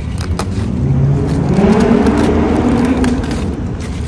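A motor vehicle's engine rising in pitch as it speeds up, loudest in the middle, then easing off.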